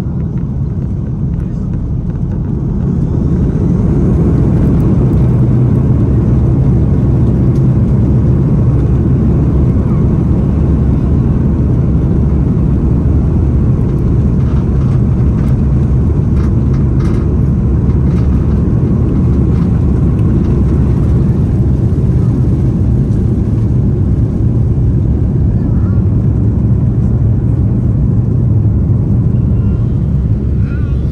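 Airbus A340-300's four CFM56-5C jet engines at takeoff power, heard from inside the economy cabin: a loud, deep, steady roar that builds over the first few seconds and then holds. A few faint clicks come through near the middle.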